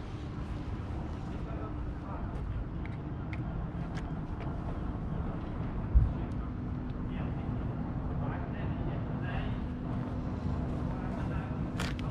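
A steady low engine drone and rumble, the sound of harbour machinery or traffic, with a single low thump about halfway through.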